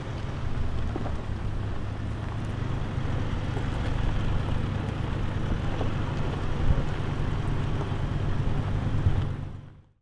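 Pickup truck engine running slowly, a steady low rumble that fades out near the end.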